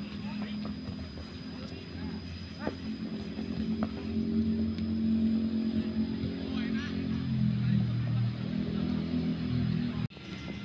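A motor vehicle engine running steadily, growing louder about four seconds in and changing pitch near seven seconds, with faint voices.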